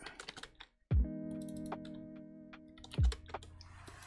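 Computer keyboard typing, scattered short clicks, as values are entered into software fields, over background music with sustained chords and a low falling bass hit about a second in and again about three seconds in.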